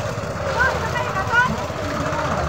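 Airplane swing ride running with a steady low rumble, children's high-pitched voices calling out over it.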